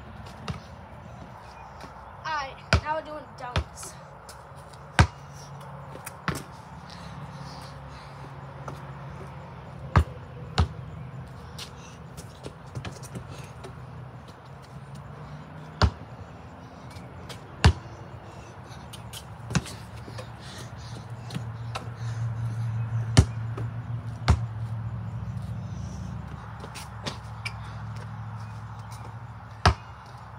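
A basketball bounced on a concrete driveway: single sharp bounces, irregularly spaced, mostly one to a few seconds apart, with a quick run of three near the start.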